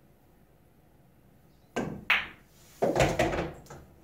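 Pool cue tip striking the cue ball, then a sharp click as the cue ball hits the object ball about a third of a second later. About a second after that comes a louder rumble of the object ball dropping into the corner pocket and rolling away inside the table.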